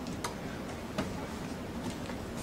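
Footsteps on a hard floor: two sharp clicks, about three quarters of a second apart, over steady room noise.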